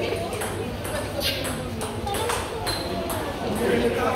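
Table tennis balls clicking off bats and tables, short sharp knocks at uneven intervals, about two or three a second, with people talking in the background.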